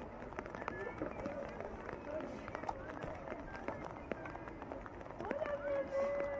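Indistinct voices of several people talking outdoors, with scattered short clicks.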